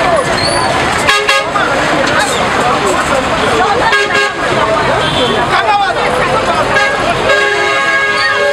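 Several people talking loudly at once on a busy street, with vehicle horns honking in short blasts a few times and a longer blast near the end.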